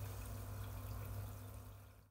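Water splashing and trickling in an indoor goldfish pond's circulating filter, over a steady low pump hum, fading out at the end.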